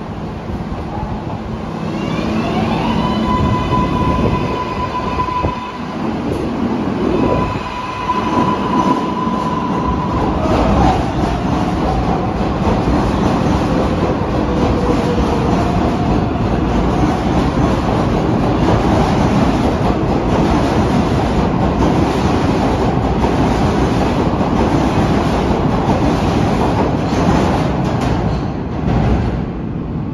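Kawasaki R188 subway train pulling out along the track: an electric motor whine rises and holds at a steady pitch a few seconds in. It gives way to the steady rumble and clatter of the cars' wheels rolling past.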